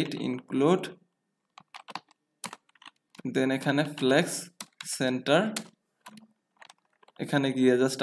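Computer keyboard typing: scattered sharp keystrokes in the pauses between stretches of a man's speech.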